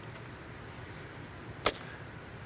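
Quiet room tone with a single sharp click about three-quarters of the way through.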